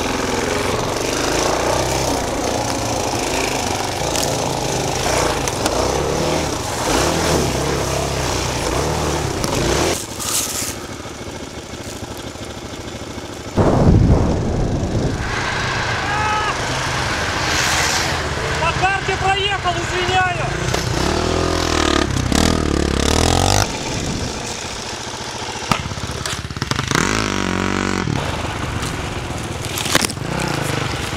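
Enduro motorcycle engine running as the bike is ridden along a rough forest track, revving up and down. A brief loud low thud comes about fourteen seconds in.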